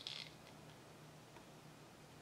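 Near silence with a faint steady hum, broken right at the start by a brief scrape as a plastic cup of paint with a popsicle stick in it is picked up.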